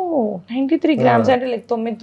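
Only speech: people talking, with a voice sliding down in pitch at the start.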